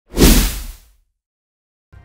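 Logo sting sound effect: a single swoosh with a low boom under it, fading away within a second, followed by silence.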